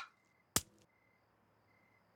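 A single sharp metallic snap about half a second in, with a brief ring after it: the ring-pull tab of a pudding can tearing off, leaving the lid sealed.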